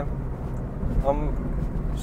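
A moving car heard from inside its cabin: a steady low rumble of road and engine noise while it drives. A man's single spoken word sits about a second in.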